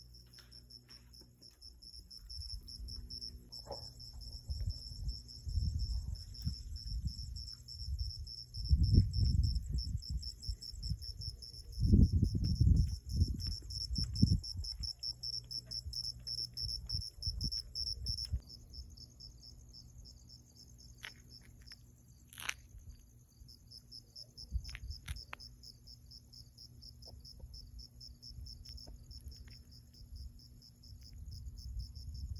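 Crickets chirping in a steady, high-pitched pulsing chorus, the pulse pattern changing a little past the middle. Bursts of low rumble come and go in the first half, loudest about 9 and 12 seconds in, and a short sharp sound cuts through about three-quarters of the way through.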